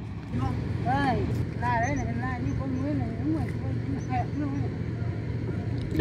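Quiet voices talking in the background, over a steady low rumble.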